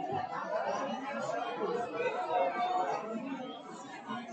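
Congregation chatter: many people talking at once, overlapping voices with no single speaker standing out, as church members greet one another.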